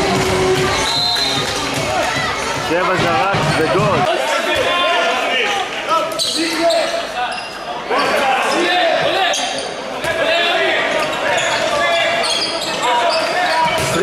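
Indoor handball play in a large hall: the ball bouncing on the court floor amid players' shouts and calls, all with hall reverberation.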